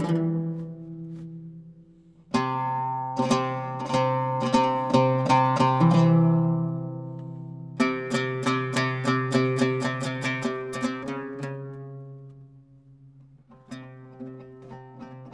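Two ouds played in duet, plucked notes ringing and dying away. A phrase fades almost to silence, a strong plucked phrase follows, then a fast run of evenly repeated plucks in the middle, which fades before a quieter phrase starts near the end.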